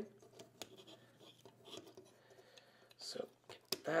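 Faint, scattered clicks and scratches of plastic action-figure parts being turned and pressed by hand.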